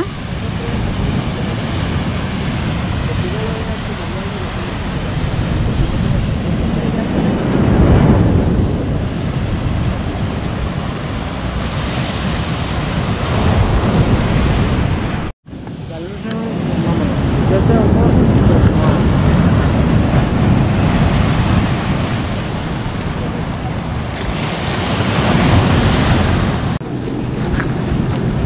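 Caribbean surf breaking against a rocky shore, with strong wind buffeting the microphone. The noise swells and eases every few seconds and briefly cuts out about halfway through.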